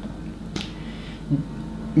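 A single sharp click about half a second in, over low room tone, followed by a brief low vocal sound from the man a second later.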